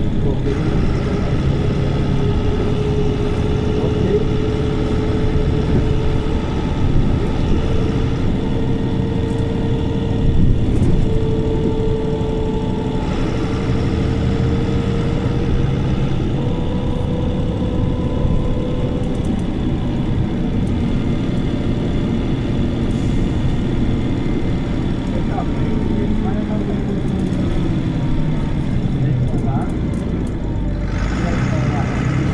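On board a 2005 MAN 18.280 HOCL-NL city bus under way: its MAN D0836 six-cylinder diesel and ZF 6HP502C automatic gearbox run steadily. A whine climbs slowly in pitch over the first twenty seconds as the bus gathers speed. Near the end a lower tone falls in pitch as the bus slows.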